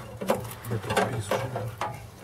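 A few light clicks and knocks as pieces of hot-smoked fish are lifted by hand out of a metal smokehouse box, over a faint low hum.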